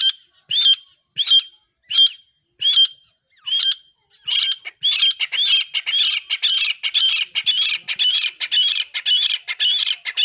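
Grey francolins (teetar) calling: a sharp, high squawking note repeated about once every 0.7 seconds, then from about four seconds in a faster, denser run of overlapping calls.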